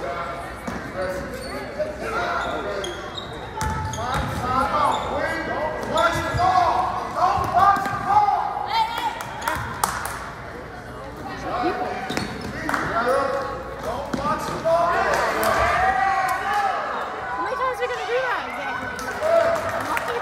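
A basketball being dribbled and bouncing on a hardwood gym floor during play, with sharp bounces scattered throughout. Players and people courtside call and shout over it, their voices echoing in the gym.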